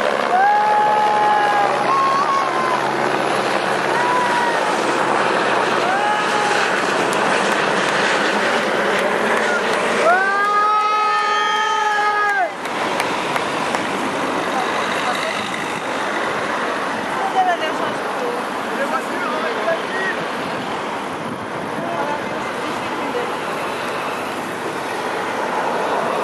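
A convoy of team cars passing close by on a country road, tyres and engines going by steadily, while the cars sound their horns: several short toots in the first seven seconds, then one long blast of about two and a half seconds around ten seconds in.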